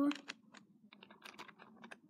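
Faint, irregular small clicks and taps, a quick run of them, from hands handling small objects.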